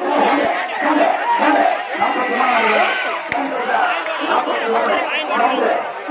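A large crowd of people shouting and talking all at once, many voices overlapping, with a few faint sharp clicks.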